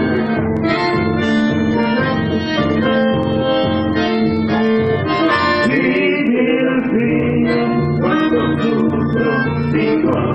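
Live chamamé played by a button accordion and a bandoneón, with a strummed acoustic guitar beneath, in a steady, unbroken rhythmic groove.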